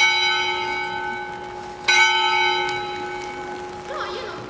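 Church bell struck twice, about two seconds apart, each stroke ringing on and slowly fading.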